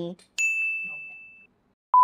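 A single bright bell-like ding, a sound effect edited in at a scene transition, struck sharply and dying away over about a second. Just at the end a short, steady, lower beep begins.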